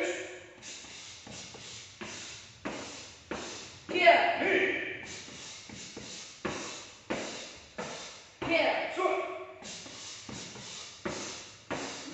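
Gloved punches landing on a person's torso in a steady run of thuds, about two a second, in a body-conditioning drill. Loud shouts break in about four seconds in and again around nine seconds.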